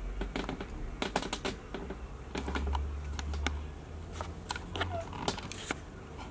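Scattered light clicks and taps at an uneven pace, with a low rumble from about two and a half seconds in: handling noise as the camera is picked up and moved closer.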